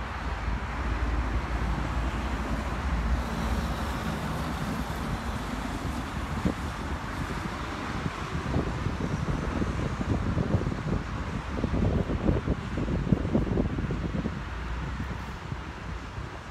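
Wind buffeting the microphone in uneven gusts over a steady wash of road traffic noise.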